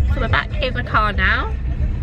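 Steady low rumble of a car heard from inside the cabin, under a woman's voice.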